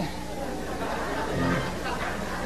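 Faint murmur of congregation voices in a hall, over a steady low hum.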